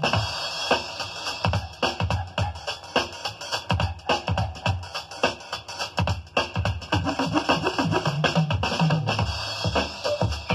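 Electronic hip-hop/electro mix with a drum-machine beat playing from a vinyl record on a direct-drive turntable, the kick hitting about twice a second.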